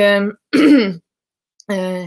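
A woman's voice: a word ends, then a short throat clearing with a falling pitch, a pause, and her speech starts again.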